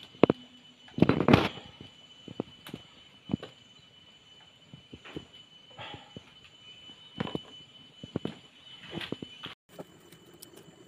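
Wood fire crackling and popping, with scattered sharp knocks as burning firewood sticks are pushed and shifted in the embers, and a dense clatter of cracks about a second in. A faint steady high tone runs underneath.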